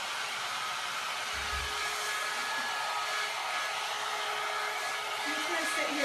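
John Frieda Salon Style 1.5-inch hot air brush running steadily, its fan blowing with a steady motor whine, held in a section of hair to curl it. A soft low bump about one and a half seconds in.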